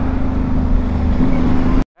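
FKM Slick 400 maxi scooter ridden at about 30 km/h: the steady drone of its 400 cc liquid-cooled single-cylinder engine under wind and road noise. The sound cuts off suddenly near the end.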